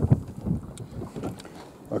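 Wind buffeting the microphone in uneven low gusts, with a couple of dull bumps and a few faint light taps.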